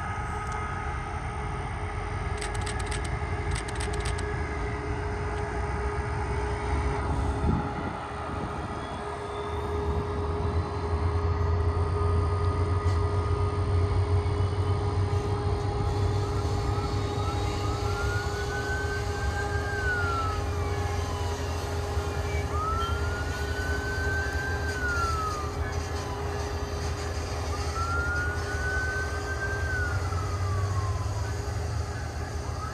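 Low steady rumble and hum of a Brightline passenger train's diesel locomotive running along the line, growing louder about a third of the way in. Over it, from about two-thirds in, a siren wails three times, each call rising, holding and falling.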